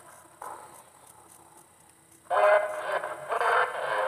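Buzzing radio static and interference on a transmission link in a film soundtrack, heard through a TV speaker. A short burst comes near the start, and a longer stretch of buzzing follows from about two seconds in.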